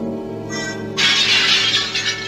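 Cartoon soundtrack music with a loud shattering sound effect about a second in, the cartoon cue for the cat's teeth breaking.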